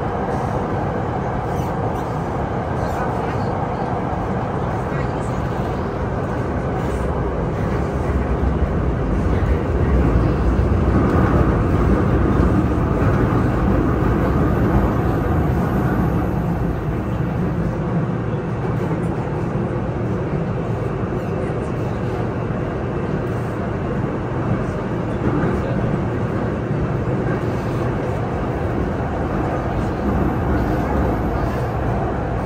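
Beijing Subway Line 10 train running underground between stations, heard from inside the car: a steady rumble of wheels and traction equipment. It grows louder from about nine seconds in for several seconds, then eases back.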